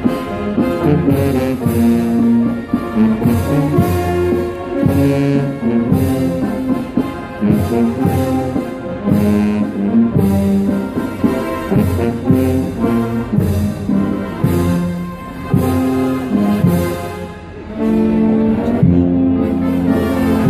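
Brass band playing a processional march: held brass chords that change every second or so, with regular percussion strikes marking the beat.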